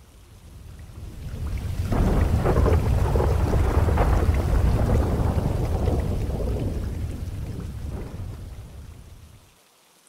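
Thunderstorm: a long roll of deep thunder over rain, swelling up over about two seconds and fading away near the end.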